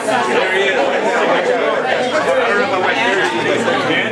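Many people talking at once: the overlapping chatter and greetings of a congregation mingling, with no single voice standing out.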